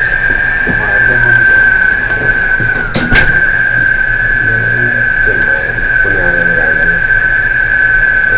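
Offshore crane machinery running with a steady high-pitched whine over a low hum. About three seconds in there is a sharp knock, and the whine briefly dips in pitch before settling back.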